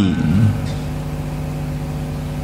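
A steady machine hum with evenly spaced overtones, holding an even level throughout.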